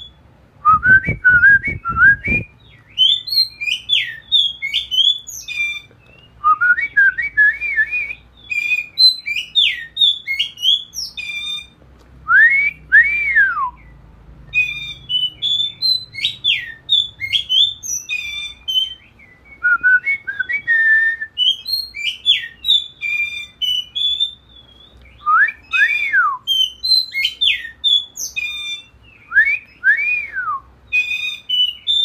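Oriental magpie-robin (kacer) singing its loud, clear 'ngeplong' song: bursts of quick, varied whistled phrases broken by short pauses, with long down-sliding whistles every few seconds.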